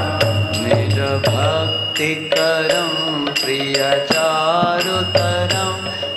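Devotional kirtan: a man singing a Sanskrit prayer over a low sustained accompaniment, with karatalas (small brass hand cymbals) struck in a steady beat of about three strikes a second that keeps ringing between strokes.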